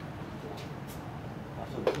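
A baseball pitch smacking into a catcher's mitt once, a short sharp pop just before the end, over steady low background noise.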